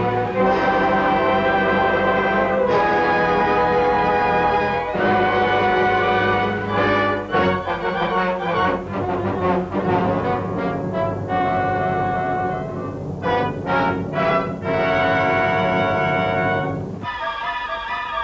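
Orchestral film score. Sustained full chords give way in the middle to a quicker passage of short, repeated notes, then swell again before a lighter, higher passage near the end.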